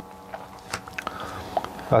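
Quiet pause with a few faint, short mouth clicks and lip smacks from someone tasting beer.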